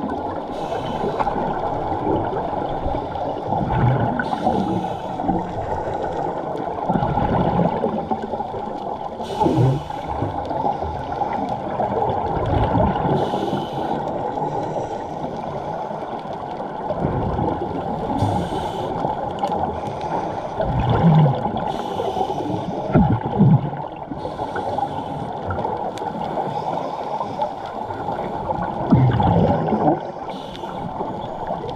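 Underwater sound: a steady muffled rush, with a burst of scuba regulator exhaust bubbles about every four to five seconds, at a diver's breathing pace.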